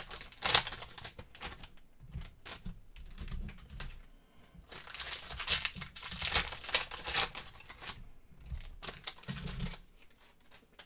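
Foil wrapper of a basketball card pack crinkling and tearing as it is ripped open by hand, in irregular crackly bursts, most intense from about five to seven and a half seconds in.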